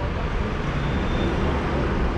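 City bus engine idling, a steady low rumble.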